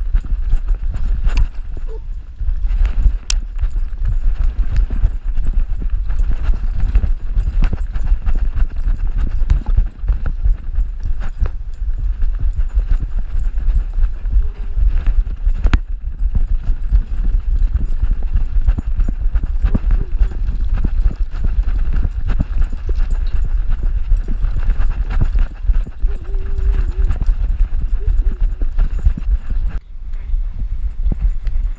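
Action camera strapped to a running dog's back, jolted by every stride: a rapid, continuous pounding and rubbing of fur and harness against the camera housing.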